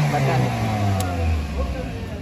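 An engine or motor tone, starting suddenly and sliding steadily down in pitch as it winds down, with a single sharp click about a second in.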